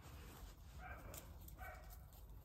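Two faint, short whimpers from a small dog, about a second apart.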